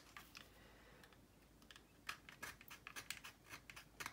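Faint, short, irregular scraping strokes of a hand razor saw's coarse teeth cutting slowly through a plastic model fuselage, mostly in the second half.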